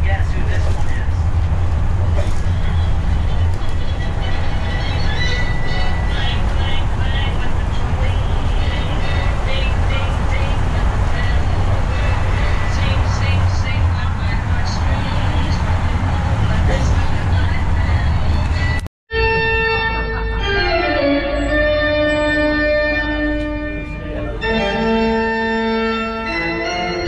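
Steady low rumble of a tour trolley bus driving, heard from inside the cabin. About nineteen seconds in it breaks off abruptly and organ music takes over, playing long held chords.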